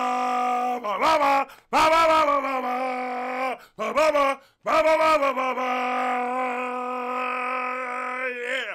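A man singing in a loud voice, holding long notes at nearly the same pitch: one note ends about a second in, another runs through the middle, and a third is held through the end, with short breaks between them.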